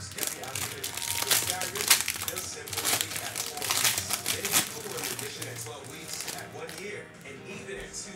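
Foil wrapper of a trading-card pack being torn open and crinkled by hand: a dense run of crackling that thins out after about five seconds.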